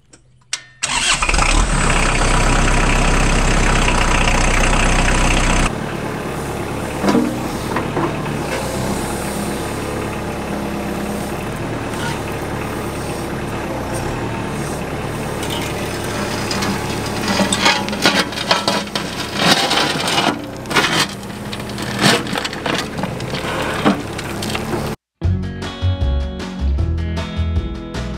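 Kubota tractor-loader-backhoe's diesel engine starting and running loudly for the first few seconds, then running more quietly while the backhoe digs. Sharp knocks come in the second half as the bucket works through rocky soil.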